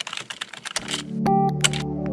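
Computer-keyboard typing sound effect, a quick run of clicks, then synthesizer music comes in about a second in with a sustained low chord and a higher melody note.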